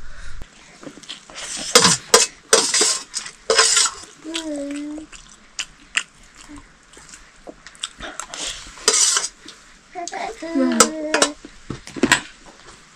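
A metal spoon clinking and scraping on a stainless steel plate as someone eats, in scattered sharp clicks with short slurping sounds. A brief vocal sound comes about four seconds in and again near the end.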